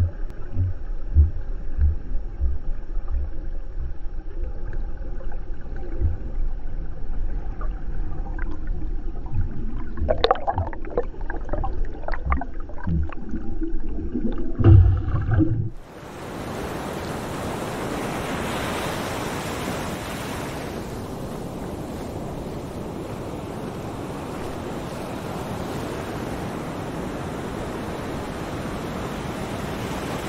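Underwater sound with low, regular thumps, a steady hum and a short cluster of sharper bubbling sounds about ten seconds in. It cuts off abruptly about halfway through to a steady rush of surf washing onto a shore, with wind on the microphone.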